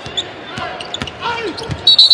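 Basketball bouncing on a hardwood court with sharp knocks, among arena background voices. Near the end a loud, high referee's whistle blows, calling a foul.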